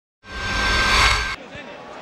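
A TV channel's logo sting: a loud rushing sound effect with a steady ringing tone in it. It swells for about a second, then cuts off suddenly, leaving faint match-broadcast background.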